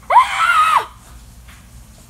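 A short, high-pitched scream lasting under a second, its pitch rising and then falling.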